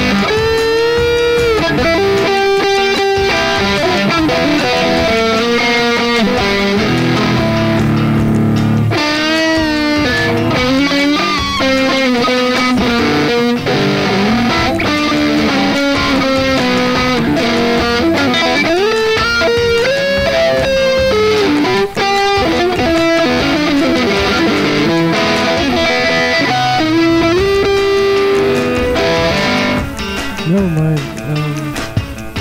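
Electric guitar playing a blues-rock lead: quick runs of notes with frequent string bends. A held low chord rings under it and cuts off about nine seconds in.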